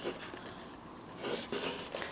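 Faint handling noise from a cardboard papercraft trailer being held open and turned in the hands: paper rubbing, with a soft bump about a second and a half in.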